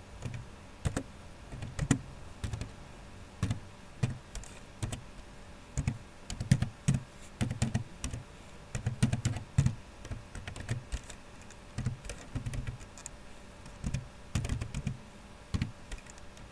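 Typing on a computer keyboard: irregular keystrokes in short bursts with pauses between them.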